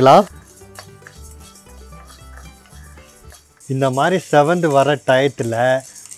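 Dry split chana dal and urad dal being stirred in an iron pan, a faint rattle heard in a lull between stretches of a man's voice. The voice is the loudest sound: it ends just after the start and comes back about two-thirds of the way in.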